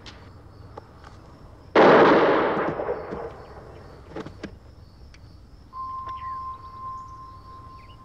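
A single revolver gunshot about two seconds in, with a long echoing tail that dies away over about a second. A few faint knocks follow, and a steady high tone sets in about six seconds in and holds.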